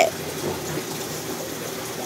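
Steady rush of running water from aquarium tanks, with filter outflows and aeration splashing and bubbling at the water surface.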